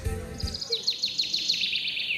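Canary singing: a fast run of high, short, falling chirps, starting about half a second in.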